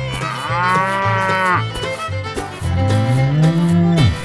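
Cattle moo sound effects: a high, arching moo lasting about a second and a half, then a deeper moo rising in pitch that cuts off suddenly near the end, over background music with a steady beat.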